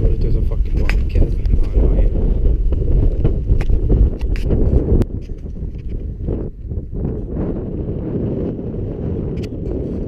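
Wind buffeting the camera microphone: a heavy, loud low rumble with scattered clicks, easing noticeably about halfway through.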